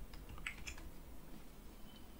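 A few faint clicks from a computer's controls about half a second in, as the document is scrolled to the next page, over quiet room tone.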